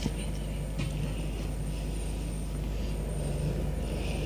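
Steady electrical hum and hiss of an old tape recording, with a thin high whistle running through it and faint indistinct room sounds.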